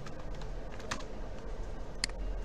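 Computer keyboard keystrokes: a string of short, irregular clicks, one louder about a second in, over a low steady hum.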